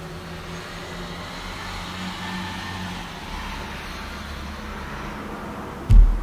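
Steady low background rumble with a faint hum, and a short low thump at the very end.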